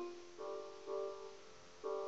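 Instrumental accompaniment of soft piano-like keyboard chords between sung lines: four chords, each struck and left to fade.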